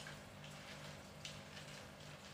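Quiet room tone: a faint steady low hum under light hiss, with a couple of faint ticks.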